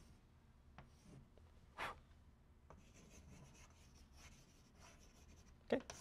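Chalk drawing on a blackboard: faint scratching and light taps, with one brief louder sound about two seconds in.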